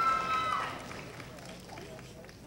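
A long, high-pitched cheer from the audience that ends under a second in, followed by the low murmur of the hall.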